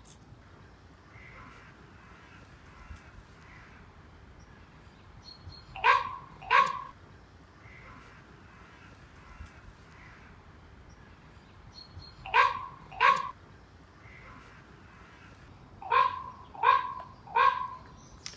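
A bird cawing seven times in three groups: two calls about six seconds in, two more about twelve seconds in, and three near the end.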